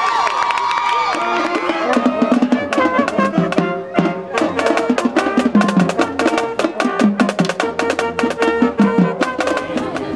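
School pep band playing in the stands: steady drum beats with trombones and saxophones carrying the tune. The drums start about a second and a half in, over crowd noise left from the play.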